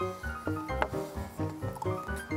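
Background music with a steady beat and sustained notes.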